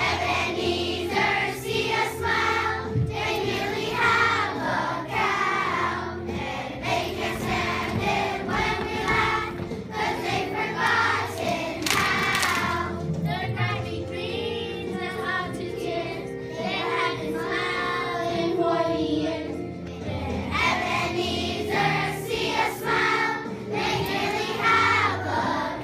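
A chorus of children singing a song from a school musical over musical accompaniment with a steady bass.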